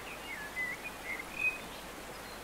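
Faint bird chirping: a few short, wavering high calls.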